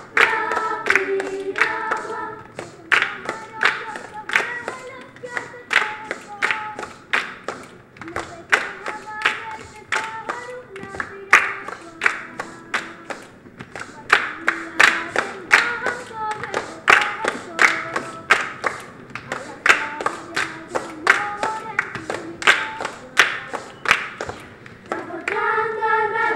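Children's choir singing with rhythmic hand clapping, about two claps a second, under a light sung line. Near the end the whole choir comes in louder and fuller.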